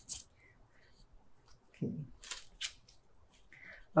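Stiff trading cards sliding and flicking against each other as a hand thumbs through a stack: a few short, dry swishes, the loudest right at the start and a cluster about two seconds in.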